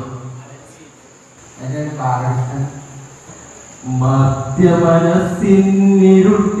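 A man singing a Malayalam poem through a microphone in a chant-like voice, phrase by phrase with short pauses; a longer, louder line with held notes starts about four seconds in.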